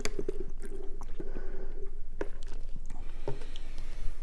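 A person drinking from a plastic cup, with wet gulping and swallowing sounds and small mouth clicks picked up close by a clip-on microphone.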